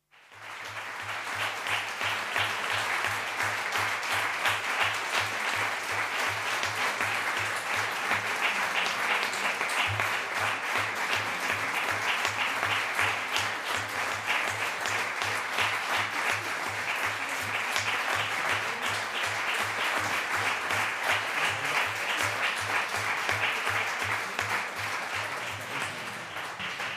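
Audience applauding: a dense, sustained patter of many hands clapping that starts abruptly and keeps an even level until near the end.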